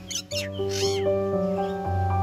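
Background piano music, with a bird giving two harsh calls in the first second, the second one rising and falling.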